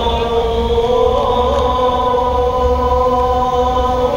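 The Fajr adhan (Islamic call to prayer) sung by a muezzin over the mosque's loudspeakers: one long held note with a small ornamented waver about a second in.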